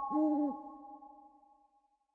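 An owl hooting: one low hoot of about half a second near the start, its pitch rising a little and then dropping away, followed by a fading tail. A thin steady tone is held beneath it.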